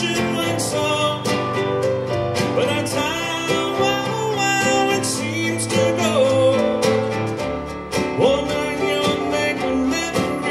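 Live song: a man singing over a strummed nylon-string acoustic guitar.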